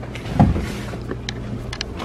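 Handheld camera handling noise: a low rumble with a thump about half a second in and a few light clicks near the end as the camera is swung around.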